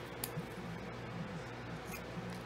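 Small craft snips cutting strips of cardstock: a few short, sharp snips.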